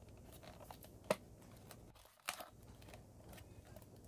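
Fingers picking at packing tape on a clear plastic container, giving faint crinkles and a few sharp plastic clicks, the loudest about a second in and another just after two seconds.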